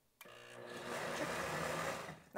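Countertop blender motor running briefly to mix a liquid egg-and-cream mixture: it starts a moment in, winds up over the first second, runs steady, and is switched off at the end. A short mixing run, not a full-speed blend.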